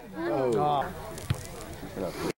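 Spectator voices calling out, then a single sharp thump of a soccer ball being struck about a second in.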